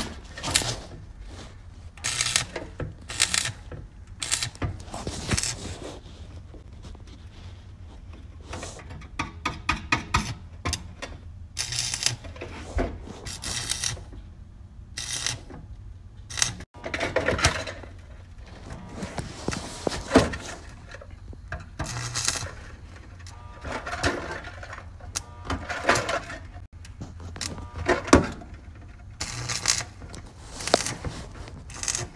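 Stick (arc) welder crackling in short bursts, roughly every second or two with a few longer runs, as the electrode is struck and broken off again and again to lay stitch welds into thin, rusty sheet-metal floor pan and fill a hole. A low steady hum runs underneath.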